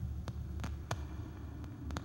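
Low steady hum with scattered crackling clicks, about six in two seconds, like surface noise on an old recording.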